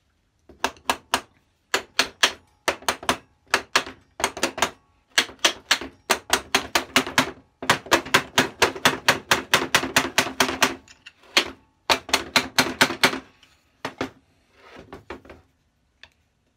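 Wooden mallet tapping repeatedly on a metal combination plough plane, driving its seized fence along the rods. The sharp knocks come several a second in runs with short pauses, each with a brief metallic ring, and grow fainter near the end.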